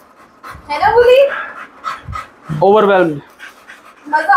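A pit bull panting, with two short pitched voice sounds, one about a second in and one near three seconds.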